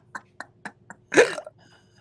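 Hearty laughter in short rhythmic pulses, about four a second, breaking into one louder burst a little over a second in.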